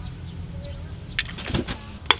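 Hands handling a plastic toy excavator and its USB charging cable: a quick cluster of clicks and light knocks about a second in, over a steady low hum.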